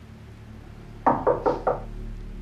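Four quick knocks on a door, evenly spaced, about a second in.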